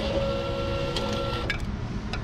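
Railway ticket vending machine printing and issuing a ticket: a steady mechanical whirr lasting about a second and a half, which stops with a few sharp clicks.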